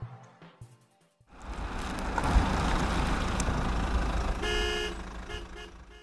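The last of the music fades out, and after a short gap a motor vehicle is heard running close by with a loud rumble. Its horn honks once for about half a second, then gives a few short toots near the end.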